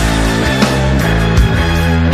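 Instrumental hard-rock track with the vocals removed: a heavy, distorted electric guitar riff over strong drum hits that land about every three-quarters of a second.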